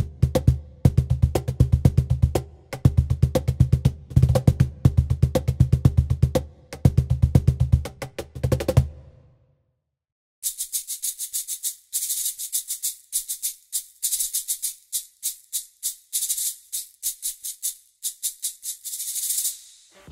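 Pitch Innovations Rhythm Box sequencer playing a sampled cajon pattern: deep bass slaps and sharper taps in a busy, steady rhythm that stops about nine seconds in. After a short silence it plays a sampled shaker pattern of rapid, bright shakes.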